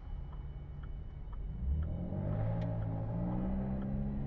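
Car engine heard from inside the cabin, picking up speed through a turn, rising in pitch and loudness from about two seconds in. A turn signal ticks faintly about twice a second underneath.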